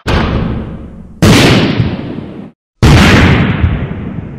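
Three impact sound effects, each starting suddenly and fading away over about a second. They come at the start, about a second in, and near three seconds in. The second and third are the loudest, and there is a short silence just before the last.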